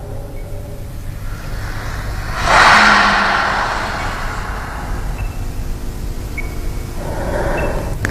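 Low rumbling drone from the stage soundtrack, with a swelling rush of noise like wind about two and a half seconds in that fades slowly, and a smaller swell near the end.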